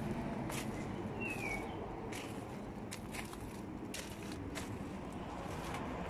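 Faint footsteps and scuffs on a paved garden path, over a steady low hum of road traffic, with one short high falling chirp about a second in.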